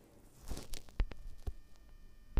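Gas stove burner knob being turned by hand: a brief rush of noise about half a second in, then a few sharp clicks, the loudest about a second in.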